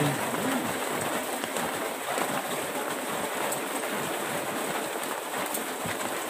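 Steady rain falling, an even hiss of drops.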